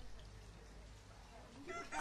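Faint outdoor background, with a brief distant bird call rising in pitch near the end.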